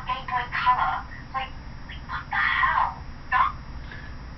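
Speech playing from a video through a phone's small speaker, thin and tinny, in short bursts with gaps.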